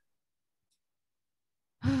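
Near silence for almost two seconds, then a woman's voice starts near the end with "Oh,".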